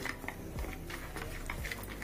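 Steel spoon stirring gram flour and water into a thick batter in a plastic bowl: a run of short, irregular scrapes and taps.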